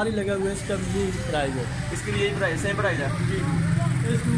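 Men's voices talking over a low, steady motor-vehicle engine rumble, which grows a little louder near the end.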